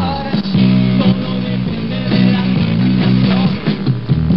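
Rock band music in the 1980s Argentine new wave style, with electric guitar over a repeating bass line.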